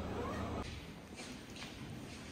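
A brief rising tone in the first half second, then, after a sudden cut, soft footsteps walking briskly on a hard floor.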